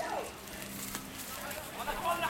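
Faint outdoor background with distant voices, a short call just after the start and more voices near the end, over a low steady hum.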